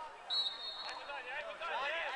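A referee's whistle blown once: a short, steady, high blast of about half a second near the start, the loudest sound here. A single sharp knock follows just under a second in, over distant voices calling on the pitch.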